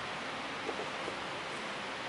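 Steady background hiss with no speech, and two faint short clicks about a second in.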